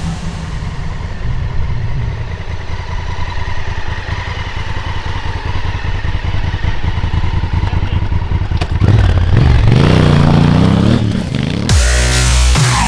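Honda Africa Twin's parallel-twin engine idling with an even low throb, then revved up and down a few times about nine seconds in.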